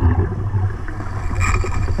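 Underwater sound around a scuba diver: a steady low rumble of regulator bubbles, with a short hiss about one and a half seconds in.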